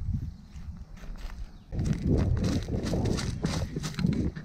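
Footsteps of a person walking quickly over grass and dry leaves, heard as quick rhythmic thuds with rumble from the moving action camera, getting louder about two seconds in.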